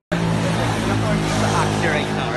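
Street traffic noise starting abruptly: a motor vehicle engine running with a steady low hum, with voices talking in the background.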